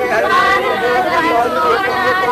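Several people talking at once: indistinct chatter of a small gathered group.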